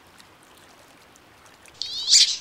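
Faint hiss, then near the end a loud, high-pitched squealing call rising in pitch: a wood duck's call.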